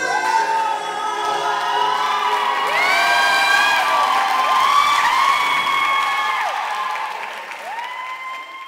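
Audience applauding and cheering at the end of a song, with several drawn-out rising and falling whoops over the clapping. It fades toward the end.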